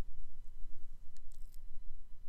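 Steady low background hum, with a couple of faint clicks a little past the middle and no distinct sound event.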